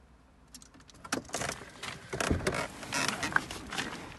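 Irregular rustling, knocks and clicks of a person shifting about and climbing out of a car's driver's seat, beginning about half a second in.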